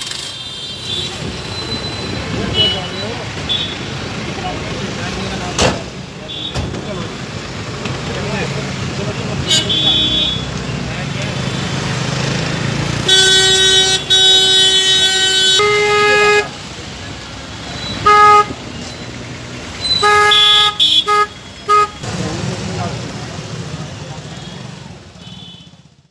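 Vehicle horn honking in street traffic: one long blast about halfway through, followed by several shorter toots, over a steady murmur of crowd voices and traffic.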